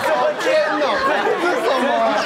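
Several voices talking over one another at once, loud studio chatter with no single clear speaker.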